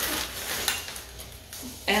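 Metal cookie cutters clinking together as a hand rummages through them in a plastic bag, with the bag crinkling. A short laugh comes near the end.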